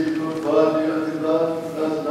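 A solo man's voice chanting a liturgical text, holding long notes with small steps in pitch.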